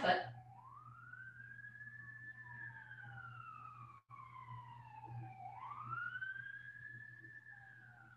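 A faint siren wailing, its pitch rising, falling slowly and rising again, over a low steady hum.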